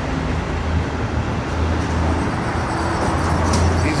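Steady street traffic noise: a continuous low rumble of motor vehicles, with no single event standing out.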